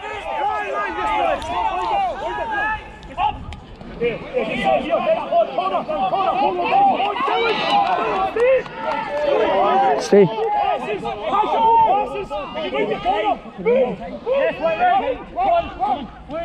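Rugby players and touchline spectators shouting and calling out over one another, with no single clear voice. A sharp knock about ten seconds in.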